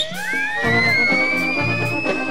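Live brass band music with a steady beat. After a brief drop-out at the start, a long, high, thin tone slides upward and keeps rising slowly over the band.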